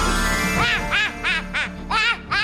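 A rising magical sweep effect, then from about half a second in a high-pitched, cartoonish cackling laugh, about three 'ha's a second, over background music.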